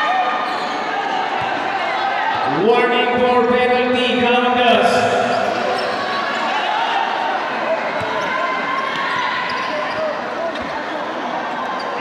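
Basketball being dribbled on an indoor court under a constant din of spectators' voices echoing in a large hall. One voice is drawn out long about three seconds in, and a few sharp knocks come later.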